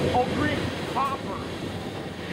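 Empty coal hopper cars of a freight train rolling past on steel wheels and rail, a steady rumbling rush of noise.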